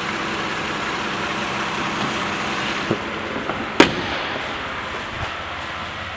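Lexus RX350's 3.5-litre V6 idling steadily, heard from the open engine bay, with one sharp click about four seconds in.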